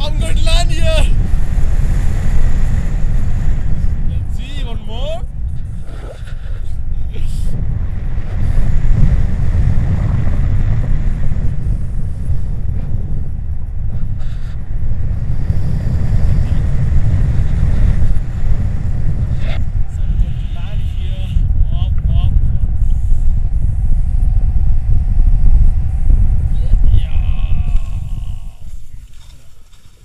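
Heavy wind buffeting on an action-camera microphone during a tandem paraglider flight: a loud, steady low rumble with a few brief voice sounds over it. The rumble dies away a couple of seconds before the end as the glider touches down on the snow.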